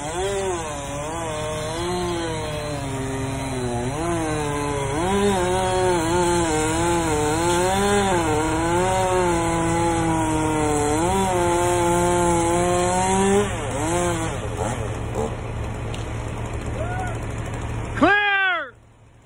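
Chainsaw running and cutting into a large tree limb from the bucket, its pitch rising and falling with the load over a steady low engine hum from the bucket truck. It ends with a quick rev and then stops.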